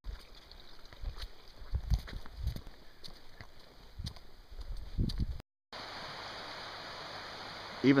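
Low, irregular thumps and a few sharp knocks. After a sudden break, the steady rush of a fast-flowing river.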